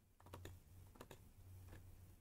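Near silence: a faint low hum with a few soft clicks at the computer, a cluster about half a second in and another near one second.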